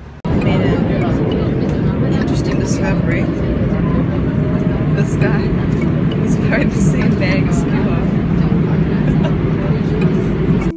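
Subway train running, heard from inside a crowded car: a steady low rumble with passengers' voices chattering over it. It starts suddenly just after the start and stops just past the end.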